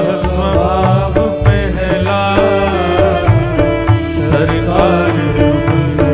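A man singing a slow Hindu devotional bhajan into a microphone, his voice gliding between held notes, over a steady sustained accompaniment and a light, regular percussion beat.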